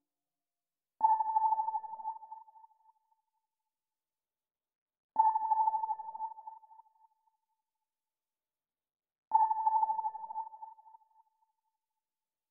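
Three identical single-pitched pings, about four seconds apart, each starting sharply and dying away over about two seconds, like a sonar ping.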